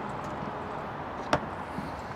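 Steady wash of water and wind around a small boat, with one sharp knock just over a second in as the landing net with the fish is set down on the boat's deck.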